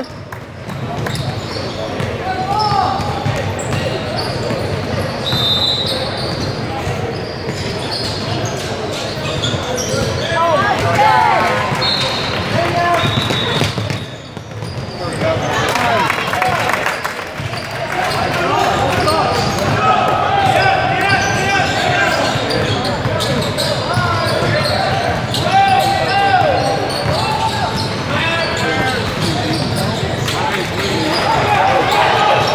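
Basketball bouncing on a hardwood gym floor during play, with spectators' voices and shouts echoing around a large hall.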